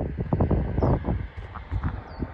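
Wind buffeting the microphone in irregular gusts, loudest in the first second and easing off after that.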